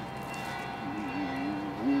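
A slow French song starting: a voice comes in about a second in with a long held note, then steps up in pitch, over steady sustained tones.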